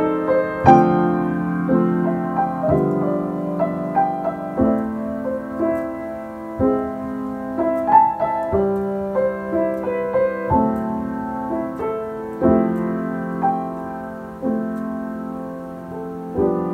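Solo piano playing a slow ballad in the key of C: a new chord struck about every two seconds under a melody line.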